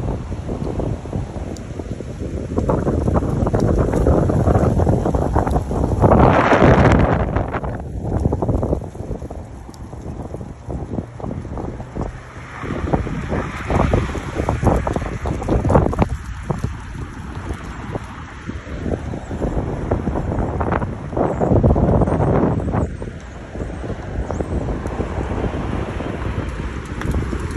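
Gusty wind buffeting the phone's microphone: a low rumble that swells and drops with each gust. The strongest gust comes about six seconds in.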